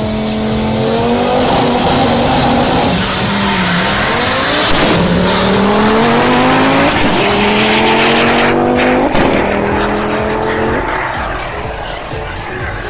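Two cars launching hard in a drag race and accelerating away at full throttle. The engines rise in pitch and drop back at each upshift, about three or four times, with a thin high whine above them, and the sound fades slowly as the cars pull away.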